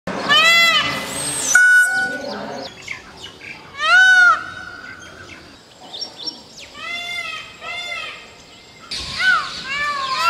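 Indian peafowl (peacock) calling repeatedly: loud, arching, wailing calls, the loudest near the start and about four seconds in, a fainter pair of calls around seven to eight seconds, and more calls from about nine seconds on.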